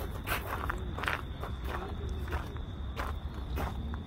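Footsteps of someone walking on sandy ground, several irregular steps about two a second, over a low steady rumble.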